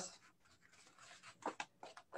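Faint, brief rustles and soft clicks of someone searching through files.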